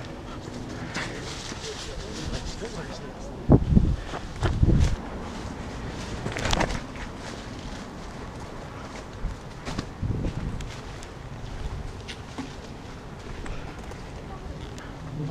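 Footsteps on fallen leaves and a path, with scattered rustles and clicks. A few heavy thumps come close together about three and a half to five seconds in.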